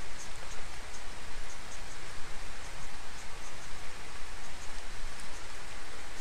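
Steady hiss of heavy rain, with faint scattered light ticks of a felt-tip marker drawing on paper.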